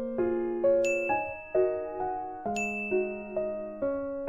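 Soft electric piano background music playing a slow sequence of notes, with two bright chime-like dings, about a second in and again about two and a half seconds in.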